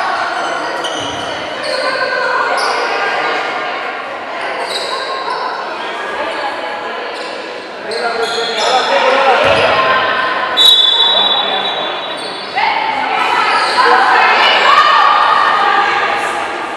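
Sounds of a basketball game in a large, echoing gym: players and spectators calling out, a ball bouncing on the hardwood court, and short high squeaks of sneakers.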